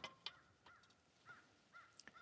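Near silence, with a few faint, short bird calls, each a brief note that rises and falls.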